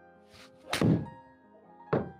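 An iron golf swing in an indoor simulator bay: a faint swish, then a loud thunk as the club strikes the ball off the hitting mat and the ball hits the screen, followed by a shorter thud near the end.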